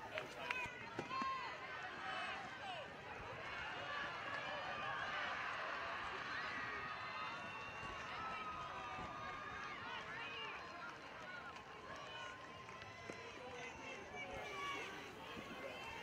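Spectators' mixed chatter and calls at a ballfield: many voices talking over one another at a low level, with no single loud event.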